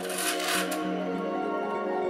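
Ambient music with steady held tones, and near the start a brief scraping rub, lasting under a second, of 3D-printed plastic parts sliding into each other.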